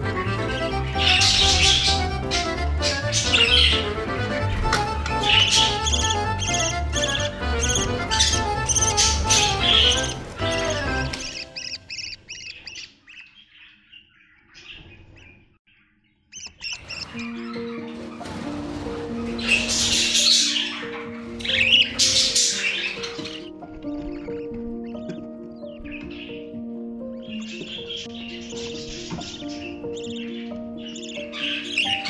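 Budgerigars chirping and squawking over background music. The music fades to near silence about halfway through, then a slower piece of held notes begins, with bursts of budgie chirps over it.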